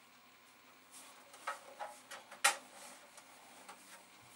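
A few short clicks and light knocks from handling an Amiga 2000 motherboard, the loudest about two and a half seconds in.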